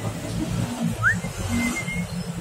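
Bird chirps: one short rising chirp about a second in, over a steady low rumble.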